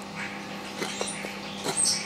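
Brown bear cub eating berries out of a steel bowl: wet chewing and smacking with short clicks, loudest just before it lifts its head.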